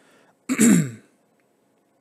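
A man clearing his throat once, a short loud rasp about half a second in that drops in pitch.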